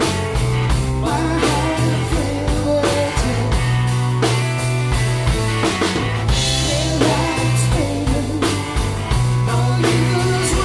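A live rock band playing electric guitars over a drum kit, with a cymbal crash about six seconds in.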